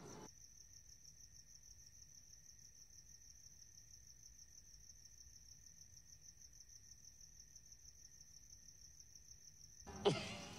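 Faint, steady trill of crickets chirping, a fast even pulsing that does not change.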